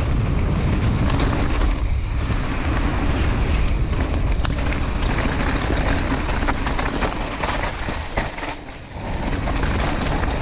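Mountain bike descending a rocky dirt trail: tyres crunching over loose shale, with frequent knocks and rattles from the bike, over a steady rumble of wind on the camera microphone. The noise eases for a moment near the end.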